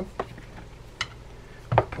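Three light, sharp clicks of small metal baitcasting-reel parts being handled on a wooden workbench as the reel's line guide cap comes off.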